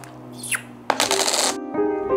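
A thin falling whistle-like sweep, then a short noisy rush about a second in, and soft background music with sustained notes starting near the end.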